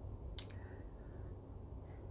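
Quiet room tone with a single short click about half a second in.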